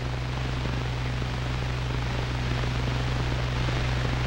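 Steady hiss with a low electrical hum underneath, with no other sound: the background noise of an old film soundtrack.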